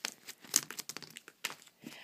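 Irregular crinkling and rustling of plastic packaging with small sharp clicks, as small items such as rolls of deco tape are emptied out of a drawstring bag and handled.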